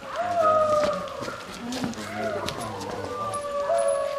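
Siberian husky howling: long, slowly falling howls, one after another.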